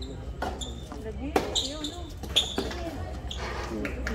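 Tennis ball struck back and forth in a rally: sharp pops of racket on ball, the two loudest about a second apart in the middle, over background chatter of spectators.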